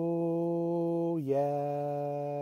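A man singing unaccompanied, holding one long steady note, then dropping to a slightly lower note a little over a second in and holding that.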